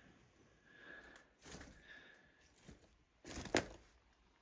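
Faint scuffs and crunches of footsteps and handling on broken plaster and lath rubble, ending with a sharper crack about three and a half seconds in.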